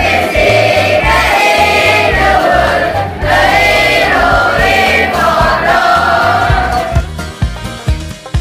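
A group of children singing a folk song in unison over a recorded backing track with a steady bass beat. The voices stop about seven seconds in, leaving the instrumental accompaniment of plucked notes.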